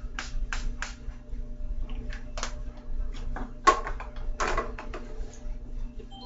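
Pump spray bottle of e.l.f. makeup setting spray misting onto a face in short hissing sprays: three in quick succession in the first second, then three more spread over the next few seconds.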